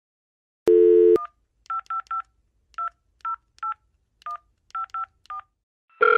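Telephone dial tone for about half a second, then about ten short touch-tone (DTMF) key beeps in an uneven rhythm as a phone number is dialled.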